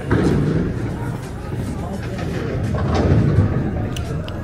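Indistinct talking over a steady background hum.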